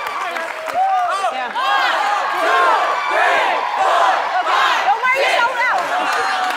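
Crowd cheering and whooping, many voices shouting over one another.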